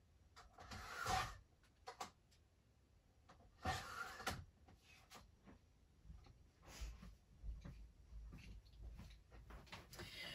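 Faint off-camera paper trimmer in use: two short scraping slides of the cutter blade about three seconds apart, with a few light knocks between them and low thuds near the end.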